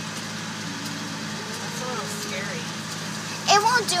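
Steady low hum of a car engine idling, heard from inside the car's cabin, under faint talk; a child speaks loudly near the end.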